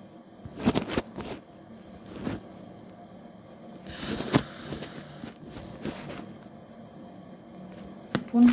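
Handling noise from a smartphone being gripped and repositioned as it records: scattered knocks and rubs against the phone's microphone. There is a cluster of them about a second in and a rustling scrape about four seconds in.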